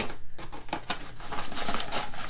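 A small cardboard box being opened and emptied by hand: a quick, irregular run of scraping clicks and paper-and-plastic crinkling as the contents are slid out.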